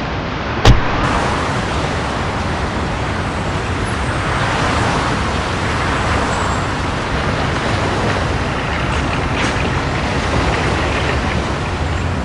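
A car door shutting with one sharp thud a little under a second in, followed by a steady wash of road traffic noise.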